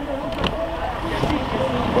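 Low, steady rumble of a car and the street traffic around it, with people talking in the background and a short click about half a second in.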